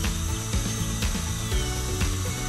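Background music over the thin high whine of an air-driven high-speed dental handpiece grinding tooth with a coarse egg-shaped diamond bur, cutting down the biting surface of a molar for a crown.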